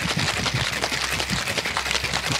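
Ice rattling hard inside a metal cocktail shaker as a cocktail is shaken vigorously, a fast continuous clatter of ice against the tin that chills the drink.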